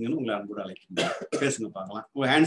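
A man talking in Tamil.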